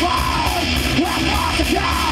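Live thrash/death metal band playing at full volume: distorted electric guitar and bass over fast drums and cymbals, with a harsh yelled vocal.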